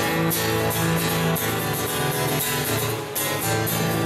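Live band playing an instrumental intro, acoustic and electric guitars strummed in a steady rhythm, with a brief drop in level just after three seconds in.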